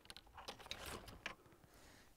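Near silence, with faint, irregular soft clicks and rustling during the first second and a half.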